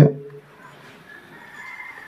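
A man's voice through a hand-held microphone trails off at the start, then a pause with only faint background and a faint thin high tone in the second half.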